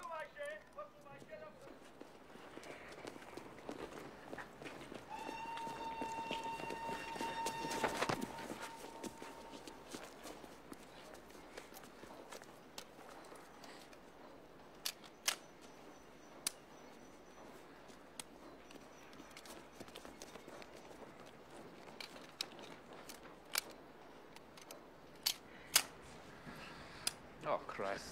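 Dry clicks of a handgun misfiring as its trigger is pulled, several separate clicks in the second half. Earlier, a long steady whistle with several overtones lasts about five seconds, with a sharp knock near its end.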